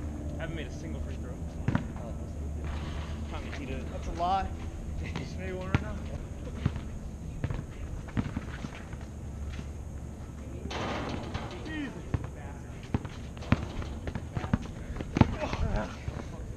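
A basketball bouncing now and then on an outdoor asphalt court: single sharp bounces spread through, with no steady dribble rhythm.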